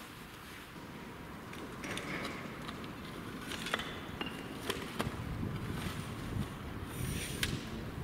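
Footsteps shifting on loose brick rubble, with scattered light knocks and clicks as a trigger-sticks tripod is handled and planted; fairly quiet.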